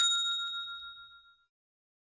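The notification-bell sound effect of a subscribe-button animation: one bright ding, struck once and ringing out over about a second and a half.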